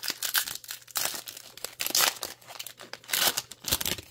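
Foil wrapper of a 2024 Topps Series 1 baseball card pack being torn open and crinkled by hand, in irregular rips with louder bursts about one, two and three seconds in.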